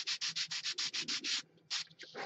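Sanding stick rubbed quickly back and forth on a small glued-on block of wood, about eight strokes a second, trimming its overhanging end flush. The strokes stop about a second and a half in, with one last stroke after.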